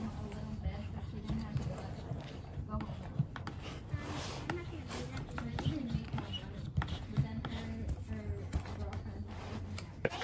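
Faint, distant voices of two girls talking, over a low steady hum.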